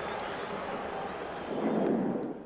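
Steady noise of a large stadium crowd, swelling briefly near the end.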